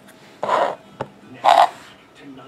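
Trading cards and a small cardboard card box being handled: two short sliding, rubbing sounds a second apart, with a light click between them.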